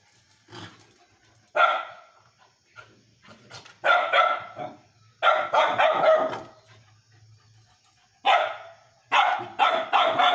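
Small dogs play-barking: a single sharp bark, then clusters of several quick barks with short pauses between them.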